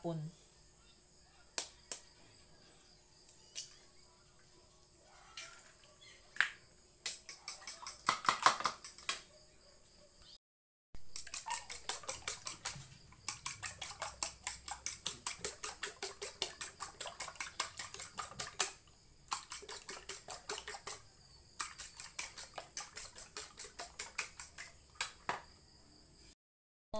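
A fork beating eggs in a bowl: a long fast run of sharp clicking taps, about five a second, pausing briefly twice. Before it come a few scattered knocks and a short cluster of clicks.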